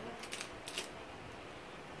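Parker Jotter ballpoint pens clicking lightly against one another as one is picked out of a pile: a few faint clicks in the first second over a low steady background.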